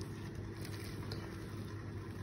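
Faint rustling of a hand digging through damp compost and cardboard worm bedding, over a steady low background hum.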